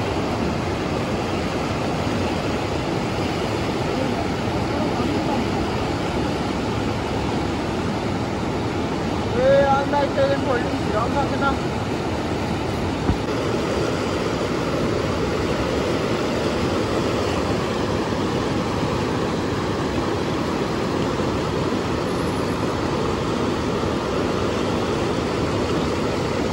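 Steady rush of fast-flowing river water, with a person's voice heard briefly about ten seconds in.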